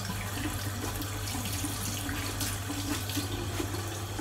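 Kitchen tap running steadily into a sink.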